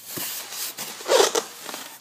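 A cardboard box being handled: flaps and panels rubbing and scraping, with a louder rasp a little past the middle.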